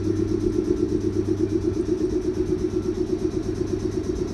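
JR 719 series AC electric multiple unit running slowly past the platform. Its motors and electrical equipment give a steady low hum and a loud, evenly pulsing drone at about eight beats a second.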